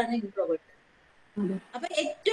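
A woman's voice speaking in short fragments, broken by a pause of under a second near the middle.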